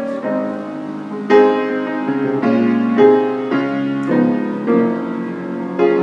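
Piano being played: a slow run of chords held on, with a new chord struck about every half second to a second.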